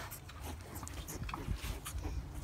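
Straw bedding rustling in short scuffles as a newborn piglet is picked up, with faint brief piglet grunts.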